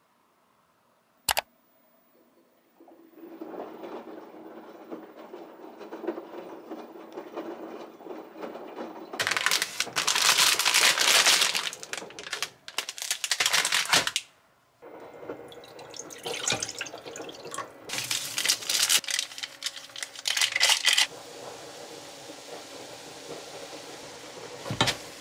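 Kitchen sounds: water running from a tap, getting louder around a third of the way in. Then comes the crinkling of a plastic instant-ramen packet being handled, and near the end a pan of water boiling on the hob.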